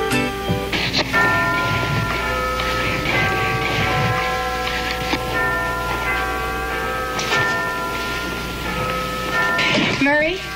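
Big Ben's bells striking: several slow bongs, each ringing on into the next.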